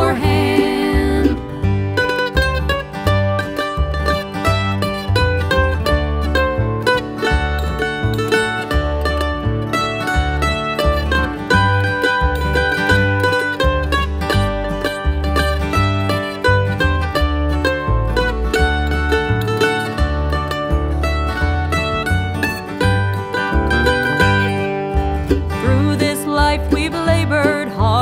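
Bluegrass instrumental break: a mandolin takes the lead with fast picked runs over strummed acoustic guitar, banjo and upright bass keeping a steady beat. A wavering held note from the previous passage fades out in the first second or two.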